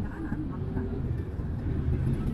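Car cabin noise while driving slowly in traffic: a steady low rumble of engine and tyres, with an indistinct voice in the first part.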